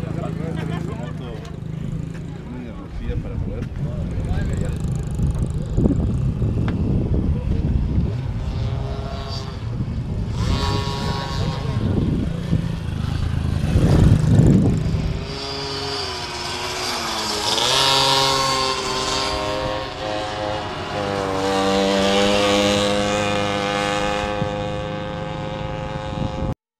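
Motorcycle engines running and being revved, with people talking over them. In the second half a steadier, higher engine tone rises and falls a few times.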